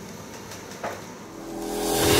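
Quiet room tone with one brief soft noise, then a rising whoosh that swells over the last half second into an animated intro's theme music.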